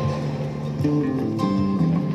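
Acoustic and electric guitars playing an instrumental passage with sustained chords and plucked notes, ringing in a large stone church.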